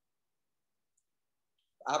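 Near silence with a couple of faint ticks, then a man starts speaking just before the end.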